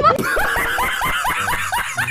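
A burst of laughter: a rapid run of "ha-ha" pulses, about seven a second, each one falling in pitch.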